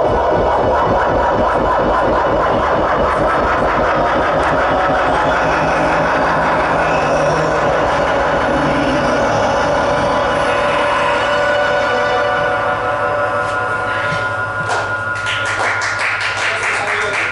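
Live electronic music from keyboards and synthesizers: a dense, fast-pulsing texture that thins out after about twelve seconds. It leaves a sustained low drone and a high held tone, with a few brief bright bursts near the end.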